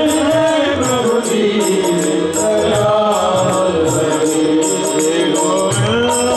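Hindu devotional bhajan sung live by men's voices to a harmonium, with a steady percussion beat underneath.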